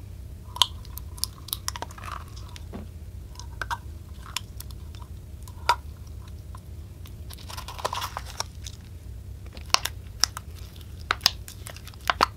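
Thick slime pouring slowly from a plastic cup into a glass bowl of mixed slimes, with scattered sticky pops and crackles, a few of them sharp and loud, and a denser crackling patch about two-thirds of the way through.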